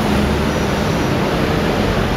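Loud, steady rushing background noise with no distinct events, the kind of din heard around a busy city transit station.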